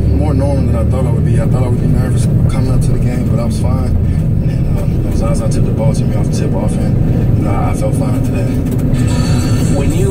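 Talk from a radio sports broadcast playing inside a moving car, over the car's steady low road and engine rumble.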